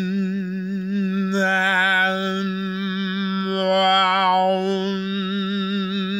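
A man humming one long steady note at a single low pitch, like a mantra 'hum', used to show a vibration. Its tone brightens twice along the way without the pitch changing.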